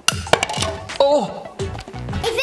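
A marble dropped and bouncing, clicking sharply several times in the first second before it drops into a plastic cup.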